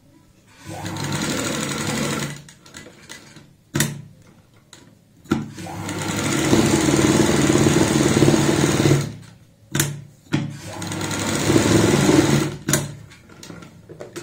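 Sewing machine stitching a pocket flap along its buckram lining, in three runs, the middle one the longest and loudest. A few sharp clicks fall in the pauses between runs.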